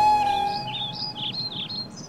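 A held note of background music fading out over the first second, while a bird chirps repeatedly in quick, short notes.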